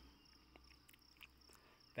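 Near silence: faint room tone with a steady, high-pitched tone in the background.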